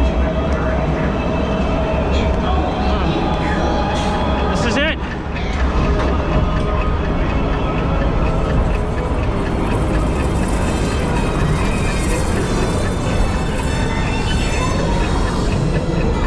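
Log flume climbing its final lift hill: a steady low rumble under the ride's ominous soundtrack music, which grows brighter in the second half. A short wavering shout comes about five seconds in.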